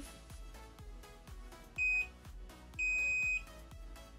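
Cordless automatic hair curler beeping over soft background music: a short beep nearly two seconds in, then a longer one of about half a second, the curler's signal that the curl is done.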